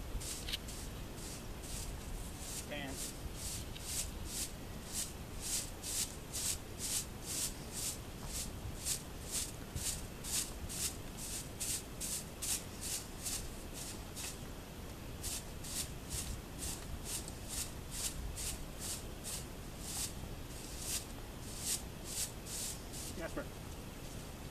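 Corn broom bristles brushing sand off a horse's coat, a steady run of short strokes at about two a second.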